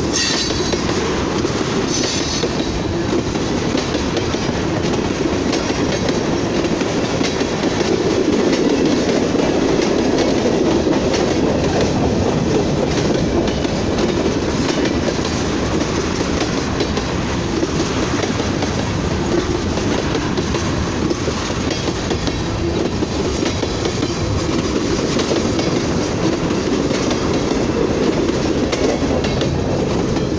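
Freight train cars, tank cars and then a boxcar, rolling past close by: a steady, loud rumble and clatter of steel wheels running on the rails.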